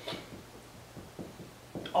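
A quiet room with a few faint, soft taps and rustles scattered through it.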